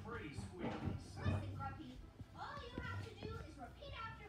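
Cartoon characters' voices talking over background music, played from a TV and picked up across the room.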